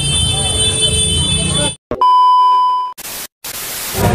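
Street crowd bustle overlaid with a thin, steady high-pitched ringing that cuts off about two seconds in. Then comes a loud electronic beep tone lasting about a second, followed by bursts of static hiss broken by a brief silence: edited-in sound effects.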